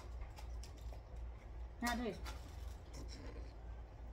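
Faint, scattered clicks and scratchy handling sounds of chicken wings being picked up off styrofoam plates and eaten, over a steady low hum. A short spoken question comes about two seconds in.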